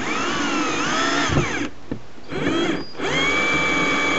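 Electric drill driving a screw through a small metal corner bracket into a wooden batten, run in three goes: a first run whose pitch rises and falls with the trigger, a short burst, then a longer steady run.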